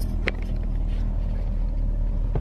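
Steady low rumble of a stretch limousine's engine running, heard inside the passenger cabin, with one light click shortly after the start.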